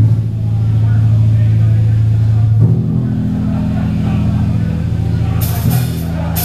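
Thrash metal band playing live: distorted electric guitars and bass hold sustained low power chords, moving to a new chord about two and a half seconds in, with a cymbal crash near the end.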